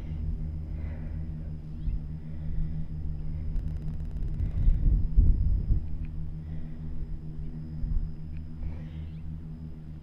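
A low, steady rumble with a hum in it, swelling briefly about five seconds in.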